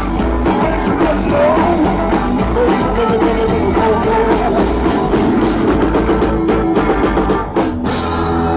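A live rock band playing: drum kit, electric bass and acoustic guitar with a lead line bending over them. In the last couple of seconds the band plays a run of sharp, accented hits.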